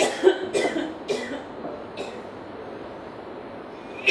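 A man coughing: four quick coughs in the first second and a half, then one weaker cough about two seconds in.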